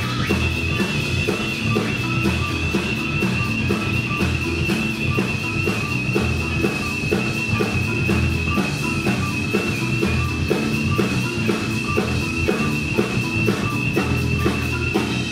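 Live instrumental rock band playing: electric guitar, drum kit keeping a steady beat, bass, keyboards and marimba, with a long high note held over the top.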